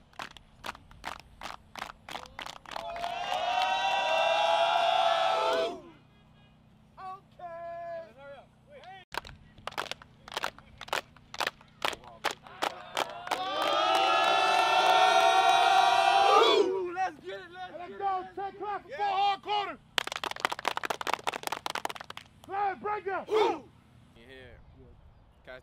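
A football team claps in unison, then breaks into a long group shout held for about three seconds. The pattern happens twice, with a single voice calling out in between. Near the end comes a burst of rapid clapping.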